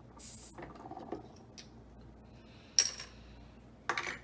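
A metal bottle opener working the crown cap off a glass soda bottle: small scrapes and clicks, then a sharp metallic pop as the cap comes free about three quarters of the way in, followed by a brief hiss. Another clink comes just at the end.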